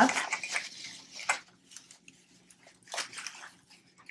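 Bubble wrap crinkling as it is pulled off a metal deflector plate. The sound comes in a few short bursts, about a second in and again about three seconds in, with quiet between.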